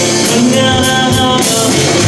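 Live band playing a pop-rock song: guitars and a drum kit, with a steady beat of cymbal strikes about three times a second.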